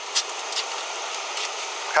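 Steady outdoor background hiss picked up by a body-worn camera's microphone, with one short tick about a quarter-second in.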